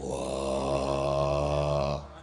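A man's deep voice holding one long, low groan at steady pitch for about two seconds, starting and stopping abruptly: the puppeteer voicing a wayang character.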